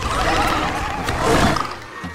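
Film creature cry of the acklay, the green clawed arena beast of Geonosis: a shrill, warbling trill, then a louder rasping burst about a second and a half in.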